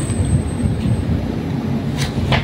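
Paper pages of a booklet being handled and turned, with a steady low rumble underneath.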